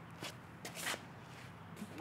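A disc golfer's footsteps scuffing through the run-up and plant of a drive: a few short scrapes, the loudest about a second in as the disc is thrown.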